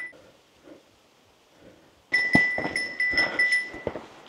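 A faint, quiet forest for about two seconds, then an animal's high, steady-pitched call sets in suddenly, pulsing several times a second, over scattered footfalls on a rocky trail.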